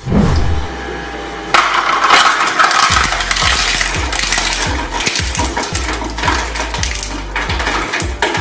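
A deep falling boom at the start, then from about a second and a half in a twin-shaft shredder crunches a plastic toy car, with dense rapid cracking and snapping of plastic over a low steady hum.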